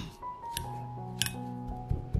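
Metal wire potato masher clinking against a glass bowl as it mashes boiled potato, a few sharp clinks about half a second apart, over soft background music with held notes.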